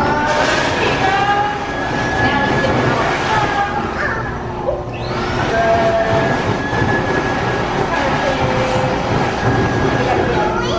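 Build-A-Bear stuffing machine's blower running steadily, blowing fibrefill through the tube into a plush bear while the foot pedal is held down. It eases off briefly just before halfway and then starts again.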